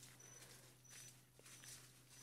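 Near silence in the open air: a faint steady low hum and a faint, short high-pitched peep repeating about every half second.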